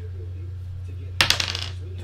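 A small die rolled onto a hard tabletop, clattering in a quick run of clicks as it bounces and settles, a little over a second in. A steady low hum runs underneath.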